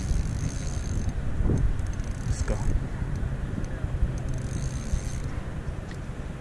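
Spinning reel clicking and whirring while a hooked trout is played on a bent rod, the high clicking strongest in the first second and again about four to five seconds in. A low rumble of wind and water on the action-camera microphone runs under it.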